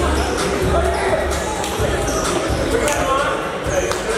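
Indistinct voices echoing in a large gym, with a basketball bouncing on the hardwood court.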